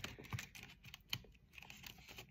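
A person chewing dark chocolate close to the microphone: irregular, crisp little crunches and mouth clicks, the loudest about a second in.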